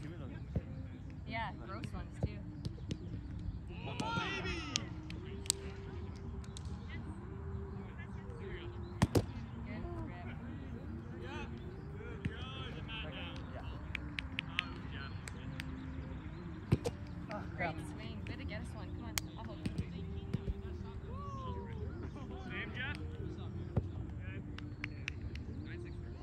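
Roundnet game play: sharp smacks of the small rubber ball being hit by hand and bouncing off the net, a few of them loud, over distant voices and a steady low outdoor background.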